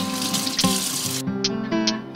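Kitchen faucet running as romaine lettuce is rinsed under it, over background music. The water sound cuts off a little past halfway while the music carries on.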